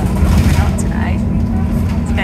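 Steady low engine and road rumble of a moving bus, heard from inside the passenger cabin.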